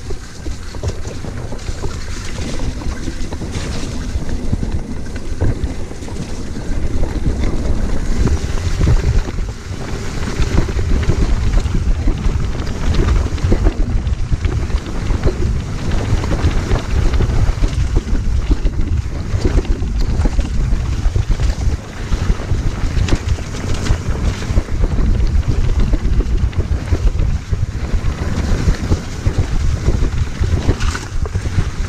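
Wind buffeting an action camera's microphone as a mountain bike descends a rough, muddy trail at speed, with a dense run of knocks and rattles from the tyres and bike over the bumpy ground.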